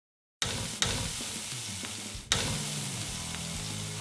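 Food sizzling in a hot frying pan, starting suddenly after a brief silence, with fresh bursts of sizzle just under a second in and again a little past the two-second mark.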